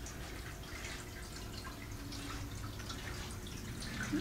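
Quiet indoor room tone: a steady low hum with faint, scattered small ticks.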